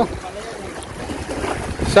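Wind buffeting the microphone: an uneven low rumble over a steady outdoor hiss.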